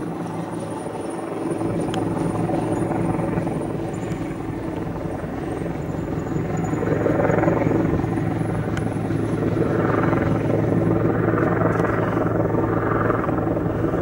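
Steady drone of a helicopter's rotor and engine, with an even low pulsing that does not let up.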